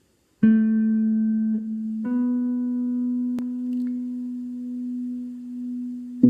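Electric guitar through a small amplifier: a single note struck and left to ring, then a second, slightly higher note struck about two seconds in and held for about four seconds.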